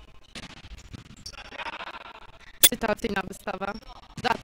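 A volleyball struck hard once, about two-thirds of the way through, followed by voices calling out during the rally.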